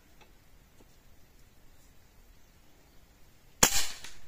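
A single shot from a Hatsan Vectis .22 (5.5 mm) PCP air rifle: one sharp report about three and a half seconds in, with a brief tail, after a few seconds of faint background.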